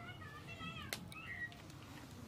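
A cat meowing faintly: a few short, high-pitched calls that fall in pitch, with one more call past the middle.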